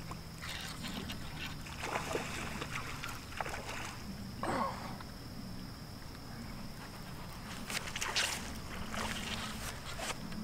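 A hooked catfish splashing and thrashing at the water's surface in irregular bursts as it is reeled in.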